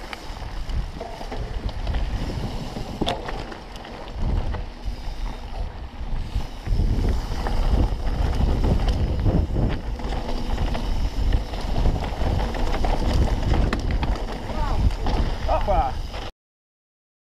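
Wind buffeting the microphone of a helmet-mounted camera on a full-suspension mountain bike riding fast down a dirt trail, with the rumble and rattle of the bike over the ground and short sharp knocks as it hits bumps.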